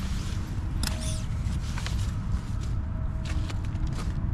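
Rustling and scraping on a tent from someone touching it from outside: irregular clicks and scrapes over a steady low rumble.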